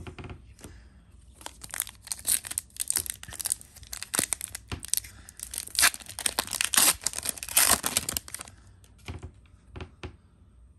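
Plastic wrapper of a football trading-card pack being torn open and crinkled by hand: a crackling, tearing rustle that starts about a second in, is loudest past the middle, and stops a little over a second before the end.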